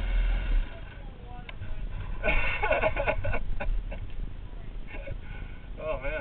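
Riders' voices and laughter, indistinct, in a cluster about two seconds in and again briefly near the end, over the low steady sound of a dirt bike engine idling.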